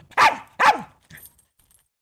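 A dog barking twice, about half a second apart, followed by a faint yip.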